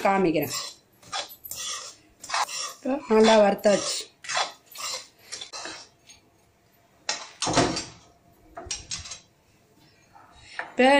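Spoon scraping and clinking against kitchen vessels in irregular short strokes, with one louder stroke about seven and a half seconds in.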